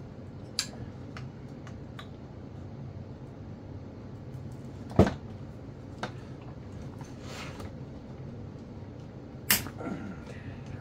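Metal clicks and knocks of a T-handle wrench loosening the cylinder nuts on a seized Husqvarna 55 chainsaw. Two sharp loud cracks, about five seconds in and again near the end, are nuts breaking loose, with a short scrape in between.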